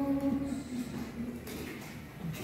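A short hum of a person's voice at the start, rising slightly and then held for about half a second, followed by low room sound.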